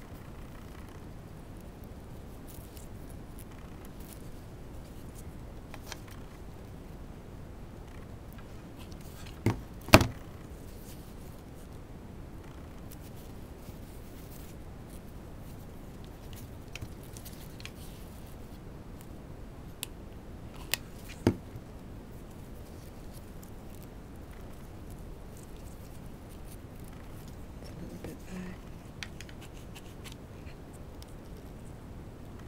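A hot glue gun and ribbon being handled on a tabletop: a few sharp knocks and clicks over a steady low hiss. The loudest is a pair of knocks about ten seconds in, and a quicker group of clicks comes about twenty seconds in.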